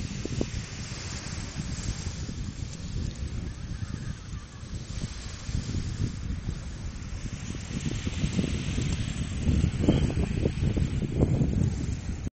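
Wind buffeting the phone's microphone in an uneven rumble that grows louder in the last few seconds, over a steady hiss from small waves breaking on the shore.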